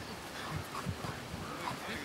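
Faint, distant voices of footballers calling out on a training pitch, with a few soft thuds.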